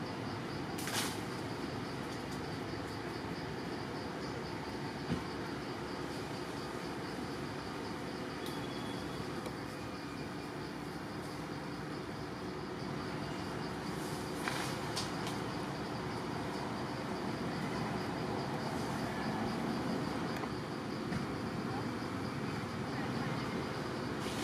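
Steady outdoor forest background noise with a pulsing high insect trill throughout, and a few brief sharp snaps about a second in, around five seconds in, and near the middle.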